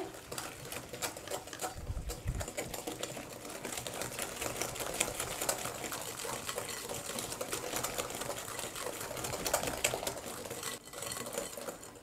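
Wire balloon whisk beating butter, sugar and egg batter by hand in a glass bowl: a fast, steady clatter of the wires against the glass, with a brief pause near the end.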